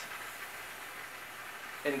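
Low, steady hiss of steam from a PRO6 Duo commercial steamer, flowing through a microfiber-towel-covered tool head held against a mattress, with the steam adjustment knob turned all the way up.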